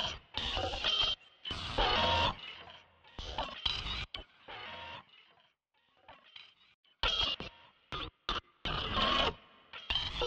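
Electronic music from a heavily modulated Mimic sampler synth in Reason: choppy, stop-start bursts of noisy sound with a few held tones. It thins to a faint stretch about halfway through, then the bursts come back about seven seconds in.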